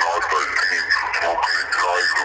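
A person talking continuously, the voice thin and narrow, as if heard over a phone line or radio.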